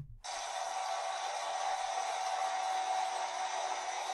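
Car crusher running: a steady, thin hissing machine noise that starts a moment in and cuts off at the end.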